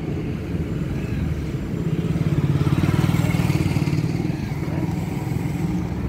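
Motorcycle engine running steadily with an even pulse, growing louder for a couple of seconds in the middle, then easing back.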